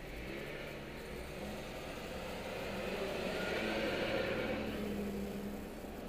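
Car engine accelerating away from a green light, heard from inside the cabin. It grows louder to a peak around four seconds in, then eases off shortly before the end.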